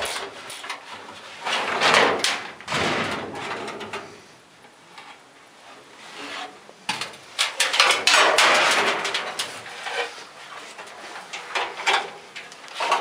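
Sheet-metal furnace blower assembly being pulled out of its compartment and handled: metal scraping and clanking in bursts, with a quieter stretch of about two seconds in the middle.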